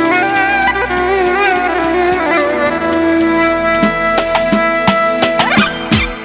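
Synthesizer lead playing an ornamented, wavering melody over a held low drone, in the style of Azerbaijani wedding dance music. A few drum hits come in over the last two seconds, and a fast rising run near the end leads into the beat.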